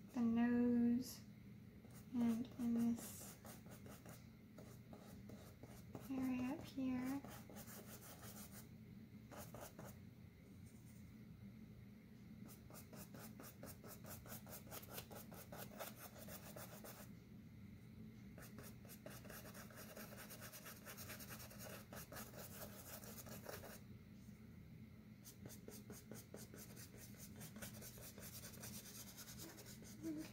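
Paintbrush scrubbing acrylic paint onto a canvas panel: a dry, scratchy brushing in rapid short strokes with brief pauses. A few short hummed vocal sounds come in the first seven seconds.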